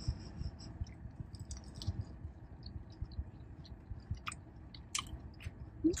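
Close-up chewing of a battered, fried cheese curd, with scattered small mouth clicks. Under it runs the low, steady hum of a car's air conditioning.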